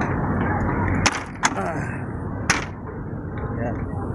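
Front grille panel of a Sinotruk Howo dump truck pushed shut by hand, giving three sharp knocks as it closes and latches, the first about a second in. A steady low rumble runs underneath.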